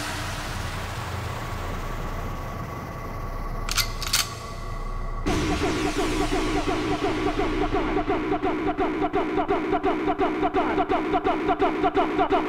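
Hardcore techno DJ mix in a quieter breakdown: a held drone, two sharp hits about four seconds in, then a new repeating synth riff coming in about five seconds in and a fast steady kick pulse, just under three beats a second, from about eight seconds.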